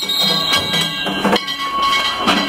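Danjiri festival band (hayashi) playing: drum and gong strikes under held high tones, loud, with crowd noise.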